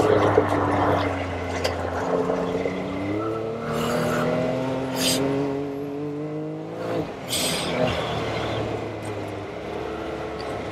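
Can-Am Maverick X3 Turbo RR's turbocharged three-cylinder engine pulling hard under throttle, its revs climbing steadily for several seconds and then dropping sharply about seven seconds in, with a few short hissing bursts.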